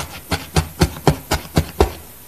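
Felting needle stabbing repeatedly through a wool heart into the foam pad, a quick even tapping of about four stabs a second, eight in all.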